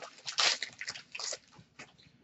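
Trading card pack wrapper crinkling and rustling in the hands as the pack is opened: a few short rustles, the loudest about half a second in, fading out before the end.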